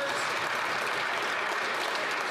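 Many members of Parliament applauding together: a dense, steady sound of clapping.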